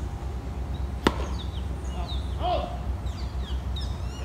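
A tennis ball struck by a racket about a second in: one sharp pop. After it, birds chirp in quick, high, falling notes over a steady low rumble.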